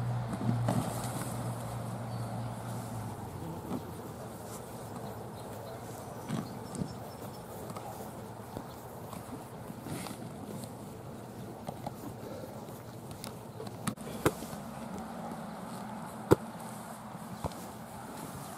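Open-air background noise with a steady low hum for the first few seconds, and a handful of sharp knocks later on, the loudest two near the end.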